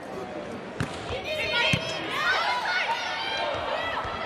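Indoor volleyball rally: the ball is struck sharply on the serve about a second in and hit again shortly after, over the noise of a large arena crowd.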